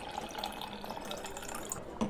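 A drink being poured into a glass, liquid running and filling steadily.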